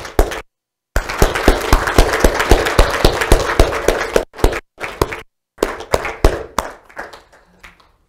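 Church congregation applauding. A dense burst of clapping starts about a second in and thins out after about three seconds into a few scattered claps.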